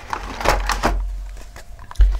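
Hands handling a die-cast toy car and its small cardboard box on a wooden table: a few light taps and scraping handling noises, ending in a low bump.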